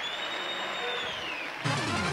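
Radio station jingle: a smooth, steady high electronic tone that bends downward and fades about a second and a half in, then a loud burst of the jingle's music and voices near the end.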